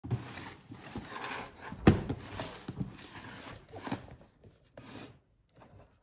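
Hands handling a cardboard shoebox on a wooden table, sliding and scraping it, with several knocks, the loudest a sharp one about two seconds in. The sound dies away near the end.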